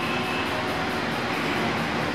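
Steady, even background sound with faint music underneath.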